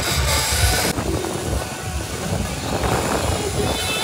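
Wind noise on the microphone of a handheld camera during a zipline ride, a steady low rumble, with the trolley running along the cable. A hiss in the upper range drops away about a second in.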